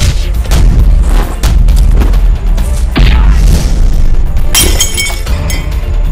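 Loud action-film background score with a heavy bass beat, overlaid with a rapid run of dubbed punch and impact sound effects; a bright, ringing crash hits near the end.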